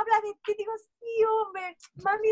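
A woman's voice speaking Spanish in a high, sing-song tone, acting out another person's gushing words.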